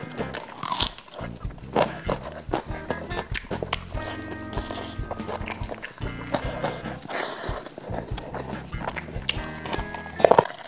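Background music with steady held tones, with short wet clicks and smacks of close-miked eating over it: chicken being torn and chewed.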